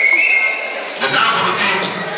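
Indistinct voices of people talking, with a high steady tone held through the first half-second.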